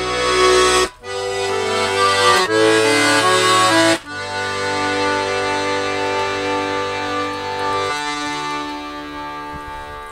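Button accordion playing an instrumental passage: a few chords with bass notes changing over the first four seconds, then one long held chord, its bass dropping away and the sound fading near the end.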